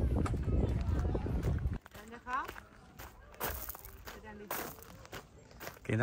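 Wind buffeting the microphone with a heavy low rumble for about the first two seconds, then cutting off suddenly to a much quieter outdoor stretch with faint voices and a few footsteps.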